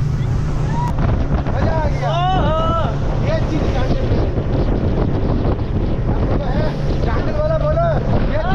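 Motor speedboat running fast across open water: a steady engine drone under wind buffeting the microphone and water rushing past the hull. Voices call out briefly about two seconds in.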